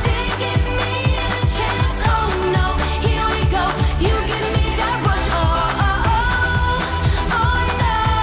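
Pop song performed by a woman singing into a handheld microphone over backing music with a steady drum beat and bass. Her voice holds long notes near the end.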